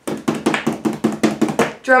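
Hands patting quickly and evenly on a surface, about eight sharp taps a second, as an improvised drum roll.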